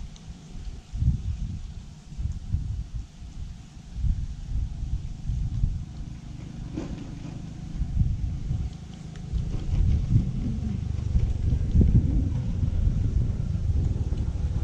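Wind buffeting the microphone: an uneven low rumble in gusts that grows stronger and steadier in the second half.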